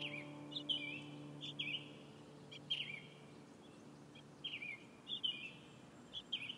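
A small bird chirping: short, high notes that dip and rise, in clusters of two or three about every second. A held piano chord dies away under it over the first two seconds.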